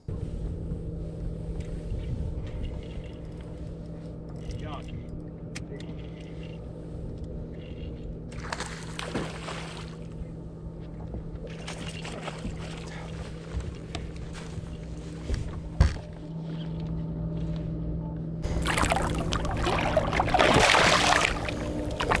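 Electric trolling motor of a bass boat running with a steady hum, with short bursts of rushing noise and a single knock. Near the end a louder rushing noise sets in and holds.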